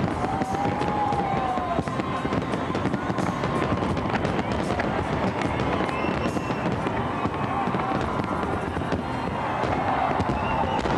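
Aerial firework shells bursting in quick succession, with a dense crackle of many sharp small reports.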